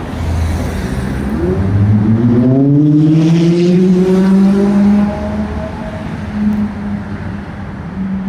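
A passing motor vehicle's engine accelerating, its pitch climbing steadily for a few seconds and then holding level. It is loudest in the middle and eases off toward the end, over a low traffic rumble.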